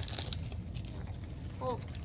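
Soft crinkling of a foil booster-pack wrapper and the rustle of a stack of trading cards being handled, with a few faint crackles at the start.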